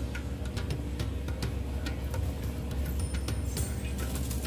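Washing machine running as a steady low hum, with quiet music playing and faint scattered clicks.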